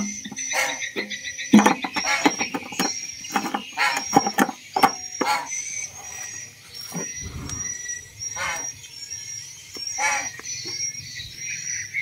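Frogs and insects calling: short, repeated croaking calls over a steady high-pitched insect trill.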